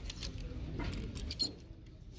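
Plastic clothes hangers clicking and sliding along a metal clothing rack as garments are pushed aside by hand, with a sharper clack about one and a half seconds in.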